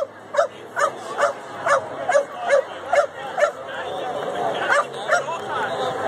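A dog barking in an even run of about nine barks, a little over two a second, then two more barks near the end, over crowd chatter.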